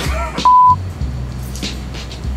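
A brief, loud single-pitch bleep about half a second in, over a hip-hop backing track with a steady bass beat and a short laugh at the start.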